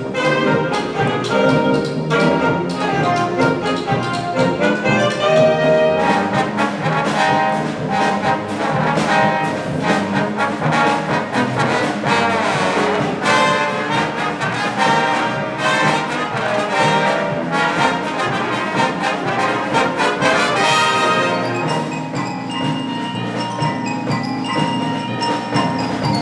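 Concert wind band playing, led by the saxophone section and then by trumpets and trombones, with the full ensemble underneath. About 21 seconds in, the full band drops away and lighter, higher ringing tones are left.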